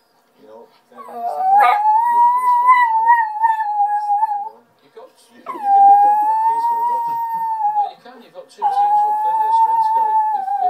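Border terrier howling: three long, steady howls of two to three seconds each, with short breaks between them, the first one wavering slightly. There is a brief sharp click about two seconds in.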